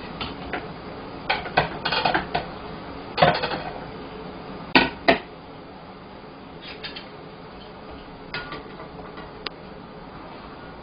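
Kitchen utensils, a plate and a pot clinking and knocking as cut vegetables are tipped into a pot of boiling water for blanching. There is a run of small clatters, two sharp knocks about five seconds in, and then only a few light ticks.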